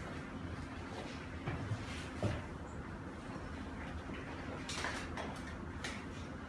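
Steady low hum of a TBK electric heating and air-blow separating oven running with its blower fan on while it heats, with a few faint clicks.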